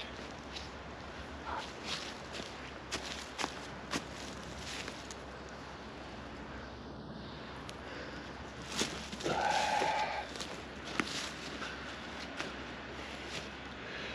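A guy line being wrapped round a tree trunk and tied off by hand: scattered light clicks and rustles of cord handling, with a brief rasp about nine seconds in.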